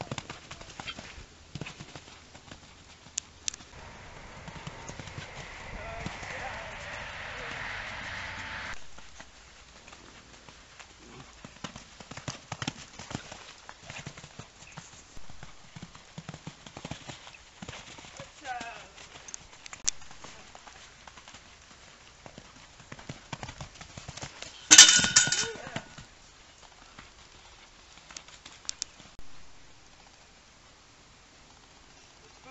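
Horse's hooves beating on a sand arena as it canters under a rider, a long run of irregular hoofbeats. Near the end there is one brief loud sound.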